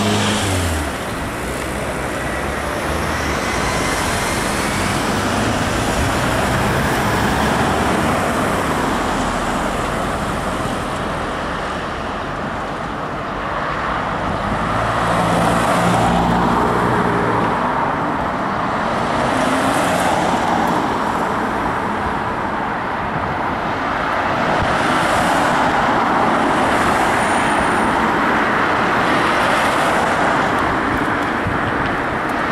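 Road traffic: cars' engines and tyres passing on a city street, a continuous noise that swells several times as vehicles go by, loudest about halfway through and again near the end.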